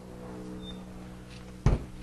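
An RV's outside-kitchen compartment hatch being opened, with one sharp thump about 1.7 s in as it comes open, over a faint steady hum.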